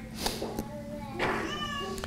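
A small child's faint, high, drawn-out vocalizing: a couple of held notes. A brief rustle comes near the start.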